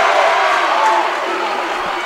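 Gym crowd cheering and shouting together right after a volleyball rally ends in a point. Many voices overlap, easing off slightly toward the end.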